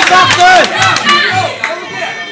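Ringside spectators shouting and cheering over one another, with sharp claps, at a kickboxing bout. It eases off after about a second and a half.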